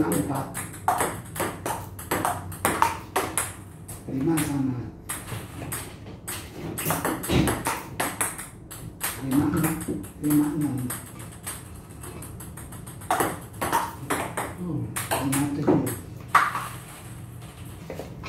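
Table tennis ball clicking off paddles and the table during rallies: runs of sharp ticks in quick succession, with short breaks between points. Voices talk now and then.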